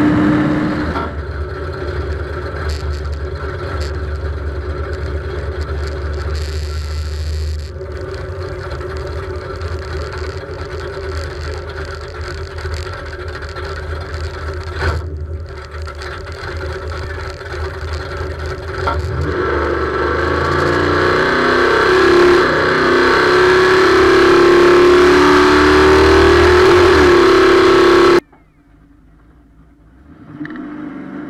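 Classic Mopar car's engine, heard from the car itself: a second of running at speed, then a steady low idle rumble. About two-thirds through, the revs come up and are held, the tone rising slowly, before the sound cuts off abruptly near the end.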